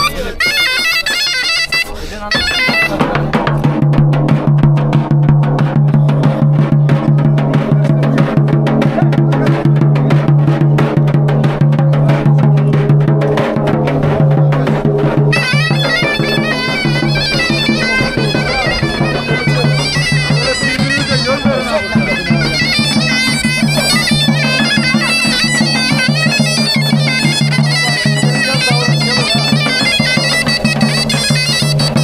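Zurna playing a shrill, continuous reedy melody over the beat of a davul bass drum, with a steady low drone underneath; Black Sea wedding procession music.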